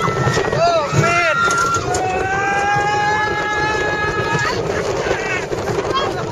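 Roller coaster riders screaming and whooping over heavy wind noise on the microphone, with short cries at first and then one long held scream in the middle.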